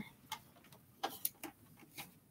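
Handling noise from a small plastic printer being lifted and turned in the hands: about five faint, irregular clicks and light knocks.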